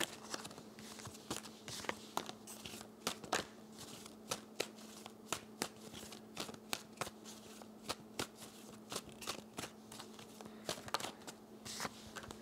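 Tarot deck being shuffled by hand: a long run of soft, irregular card clicks and slides. A faint steady hum sits underneath.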